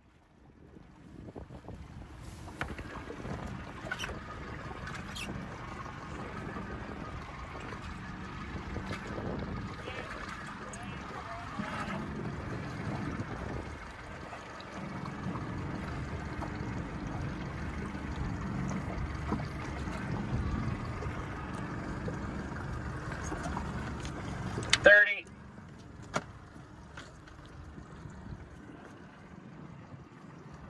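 Steady noise of a boat on open water, with wind on the microphone and faint voices. About 25 seconds in a short, loud sound with rising pitch stands out, and after it everything is quieter.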